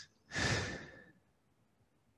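A single short breath out, about half a second long, close to the microphone, heard as a soft hiss.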